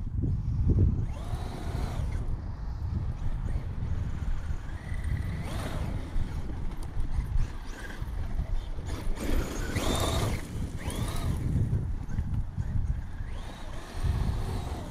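Traxxas UDR radio-controlled truck driving: its electric motor whines up and down in pitch several times as it speeds up and slows, over a steady rumble of wind on the microphone.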